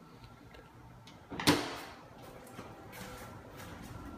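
A refrigerator door swung shut about a second and a half in, a single sharp thud that dies away quickly. Faint handling noise follows.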